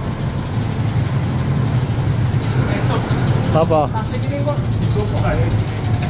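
A steady low mechanical hum, like a machine or engine running, with brief voices over it.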